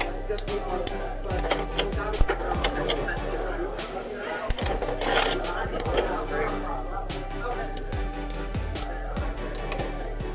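Background music and chatter, with scattered sharp clicks from two Beyblade X tops spinning in a plastic stadium, knocking against each other and the stadium.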